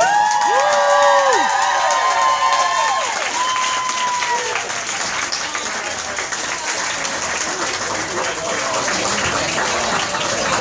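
A small crowd applauding and cheering, with several long whoops in the first three seconds or so, then steady clapping mixed with voices.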